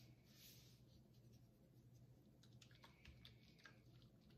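Very faint: salt pouring from its container onto raw pork in a roasting pan, a soft hiss in the first second, then light crackling clicks as hands rub the salt into the meat.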